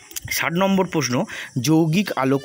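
Speech only: a person talking, in continuous narration.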